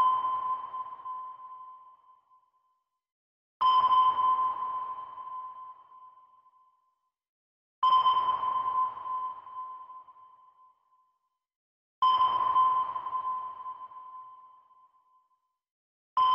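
Sonar-style ping sound effect repeating about every four seconds: each a single clear ringing tone that fades away over two to three seconds.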